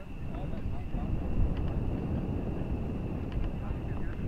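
Outdoor field ambience: a fluctuating low rumble with a thin steady high tone above it, and faint distant voices calling now and then.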